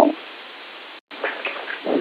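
Steady hiss of a telephone conference line in a pause between speech. It cuts out for an instant about halfway through, and faint, wavering background sounds follow.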